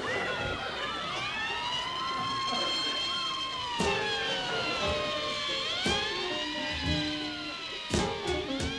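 Several sirens wailing together, their pitch rising and falling slowly and out of step with each other. About four seconds in, music joins underneath them.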